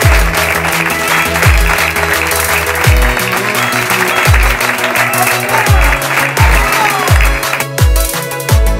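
Electronic dance music with deep bass-drum hits that drop in pitch, about one every second or so, with applause mixed in that stops just before the end.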